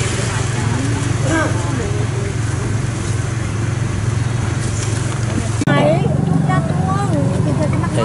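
Street traffic noise with a steady low engine hum, and voices talking over it. About two-thirds of the way through, the sound changes abruptly to different background chatter.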